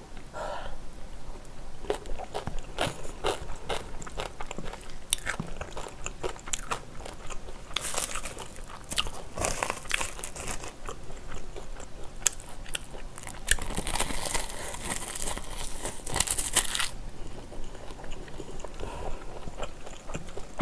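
Close-miked chewing and biting of spicy stir-fried squid and pork belly, with many sharp wet mouth clicks. Crisp crackling comes in bursts around 8 to 10 seconds and again from about 13 to 17 seconds as a dried seaweed (gim) wrap is handled and bitten.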